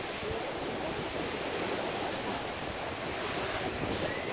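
Small ocean waves washing steadily onto a sandy beach, with wind on the microphone.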